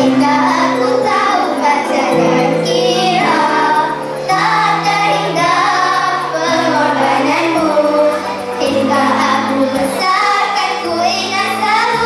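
A group of schoolgirls singing a song together into microphones over instrumental accompaniment with steady bass notes.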